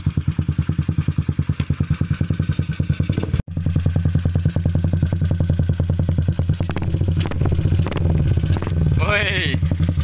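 Yamaha LC135 single-cylinder four-stroke engine running at a steady idle through an open Espada aftermarket exhaust, a rapid, even pulsing note with a full, dense sound. The sound drops out abruptly for an instant about a third of the way in.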